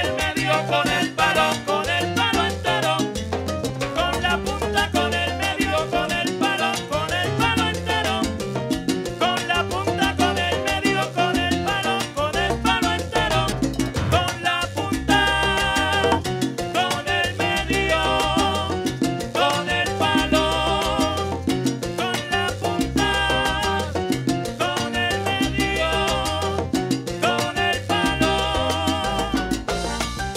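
Live salsa band playing a song with a steady, repeating beat; from about halfway in, brighter held notes come in on top.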